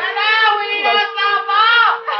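One long, high-pitched vocal wail of mourning, held nearly level, rising near the end and then dropping away, over a faint steady tone underneath.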